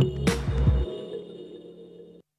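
Television channel ident jingle: synthesized music with a few sharp hits and a short noisy sweep near the start, then a held chord fading away.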